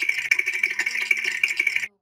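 A steady rattling noise that cuts off suddenly near the end.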